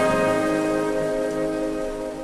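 Orchestral music: the orchestra holds a sustained chord that slowly grows quieter.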